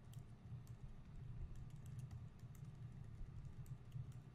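Faint typing on a computer keyboard: scattered, irregular light key clicks over a low steady hum.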